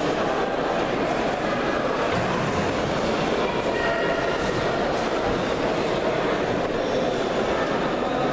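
Steady hubbub of many voices from a crowd echoing around a large sports hall, blended into a continuous din with no single voice standing out.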